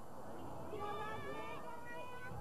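Several children's high voices calling out together on a playground, starting a little over half a second in.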